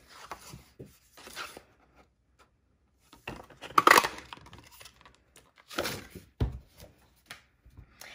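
A handheld craft punch pressed through cardstock, cutting out a shaped sentiment label with one short, sharp crunch about four seconds in. A low thump follows a couple of seconds later, with light paper-handling noises around it.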